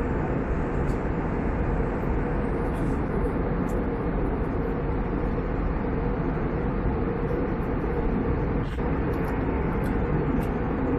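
Airliner cabin noise in cruise flight: the steady, even rush of the engines and the airflow past the fuselage, heard inside the cabin.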